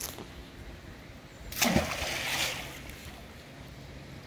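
A single splash in canal water about one and a half seconds in, starting sharply and dying away over about a second.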